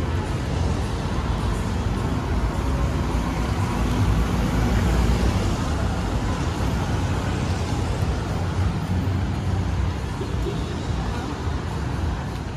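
Steady city road traffic: cars and motorbikes driving past on the street beside the sidewalk, a continuous rush of engine and tyre noise.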